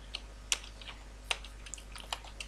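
Computer keyboard keys being pressed: a handful of separate keystrokes, two of them louder, about half a second and a second and a quarter in.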